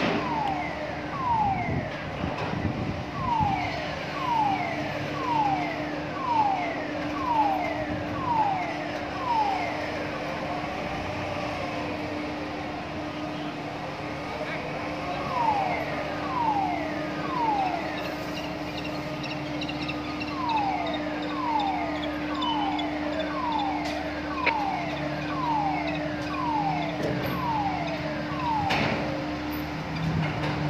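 A steady low machinery hum, overlaid by runs of short falling calls, about two a second, with a couple of pauses.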